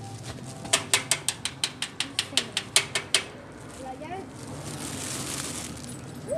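Rapid knocking on a metal door, about fifteen sharp raps at roughly six a second, followed by a faint steady rush of noise.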